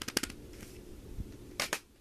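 Plastic CD jewel cases clicking as they are handled: a quick run of sharp clicks at the start, then a short rustle about one and a half seconds in.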